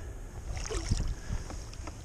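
Water splashing lightly and dripping, with scattered small clicks and rustles, as hands work a musky in a wet mesh cradle net alongside the board, over a low wind rumble on the microphone.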